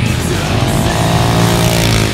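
Motorcycle engine passing by, its note rising and then falling in pitch, mixed under loud rock music with guitar.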